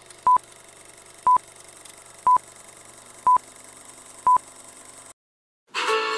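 Old-film countdown leader sound effect: five short high beeps, one a second, over a faint hiss and crackle of film noise. It cuts off suddenly, and guitar music starts just before the end.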